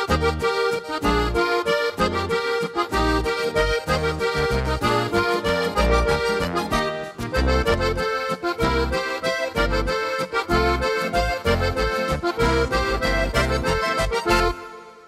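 Korg Pa5X Musikant arranger keyboard playing an Oberkrainer waltz style, with an accordion voice over bass and drum accompaniment in steady waltz rhythm. It is the style's two-bar Intro 1 used as a transition on a C7 chord, lifting the tune a whole tone from E-flat major to F major. A final hit comes just before the end.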